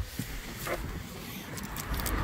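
Rustling and handling noise of someone climbing out of a car with a phone in hand, with a low rumble and a few sharp clicks, one about two thirds of a second in.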